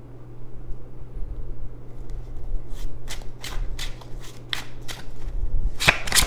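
Deck of tarot cards being shuffled by hand: a quiet start, then a run of quick card slaps about three a second from about halfway in, ending in a louder flurry.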